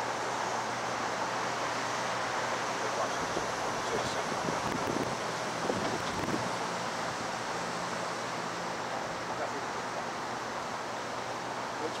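Steady wind noise on the microphone with a faint low hum under it, and a few soft low knocks about four to six seconds in.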